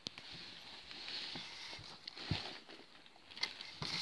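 Handling noise as toys and a plastic toy bed are moved about: rustling and a few light knocks, with the sharpest knocks near the end.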